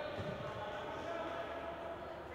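Echoing gym ambience of a basketball game: voices on and around the court, with a basketball bouncing on the hardwood floor a few times early on.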